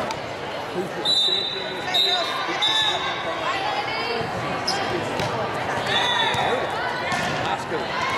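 Din of many voices echoing in a large sports hall, with volleyballs being hit and bouncing on the court. Several short high referee whistle blasts cut through: three in the first three seconds and another about six seconds in.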